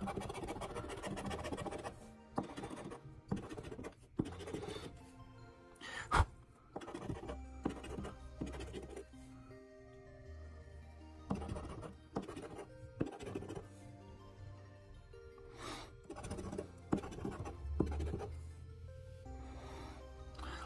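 A coin scratching the latex coating off a paper lottery scratch-off ticket in repeated short strokes, with one sharper knock about six seconds in. Background music plays underneath.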